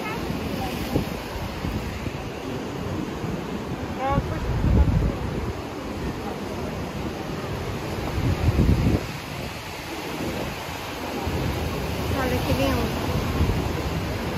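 Atlantic surf breaking and washing over shore rocks, with wind buffeting the microphone. The waves surge louder about four and a half and eight and a half seconds in.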